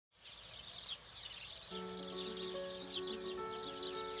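Many small birds chirping busily, joined about two seconds in by background music of long held notes.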